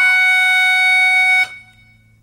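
Harmonica holding one long, high note that breaks off about one and a half seconds in, in a blues instrumental.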